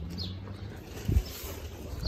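A bird chirping, one short falling chirp about a quarter second in, over a low steady hum, with a single dull thump a little after a second in.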